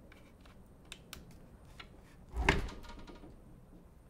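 A binocular microscope being moved into position over the bench: light clicks and handling noise, then a single sharp knock with a brief ring about halfway through.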